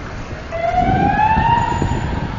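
A siren wailing: one pitched tone that rises smoothly for about a second, then holds steady.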